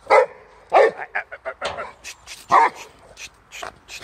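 Boxer dog barking at a wheelbarrow: three loud barks, with shorter, quieter barks in between.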